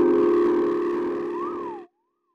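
Elektron Digitone FM synthesizer holding a sustained chord, run through an Elektron Analog Heat MKII, with a tone sweeping up and down in pitch from about a second in. The sound fades gradually, then cuts off suddenly just before the end.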